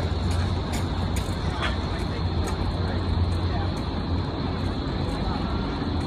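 Steady outdoor city ambience: a constant low rumble of traffic with faint voices of people around.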